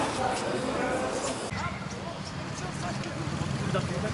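Men's voices talking. After a cut about a second and a half in, a steady low hum of idling motorcycle engines runs under street voices.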